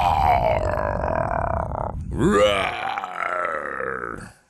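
A man imitating a dinosaur's roar in a growling voice: one long roar that breaks off a little before halfway, then a second that opens with a rising pitch and holds to the end.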